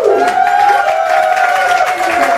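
A woman's voice holding one long final sung note into a microphone at the end of a song, while the audience starts to applaud and cheer.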